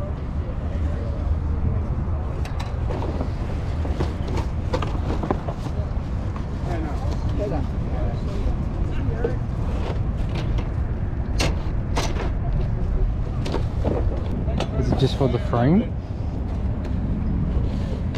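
Outdoor ambience of a busy field: a steady low rumble of wind on the microphone and the chatter of people nearby. About eleven and twelve seconds in come two sharp clicks as plastic dollhouse parts in a cardboard box are handled.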